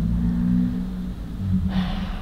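A steady low hum in the room, with a short breath drawn in near the end as the speaker pauses.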